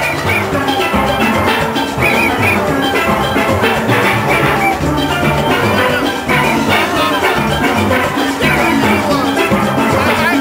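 A steelband playing live: many steel pans ringing out a fast melody and chords over a driving drum and percussion rhythm.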